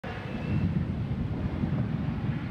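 Helicopter flying overhead: a steady low rumble of rotor and engine, mixed with wind buffeting the microphone.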